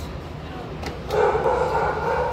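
A dog's drawn-out cry starts about a second in and holds a fairly level pitch until near the end, over a steady low hum.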